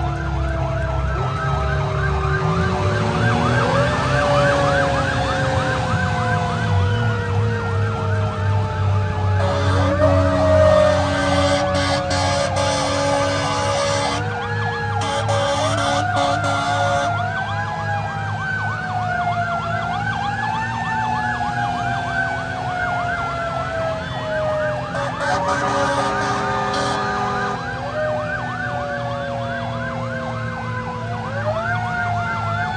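Federal Q mechanical siren on a fire engine, wound up again and again, each time rising quickly and coasting slowly back down, overlapping with a faster warbling electronic siren. A diesel engine rumbles underneath, and steady horn blasts sound about ten seconds in and again around twenty-six seconds.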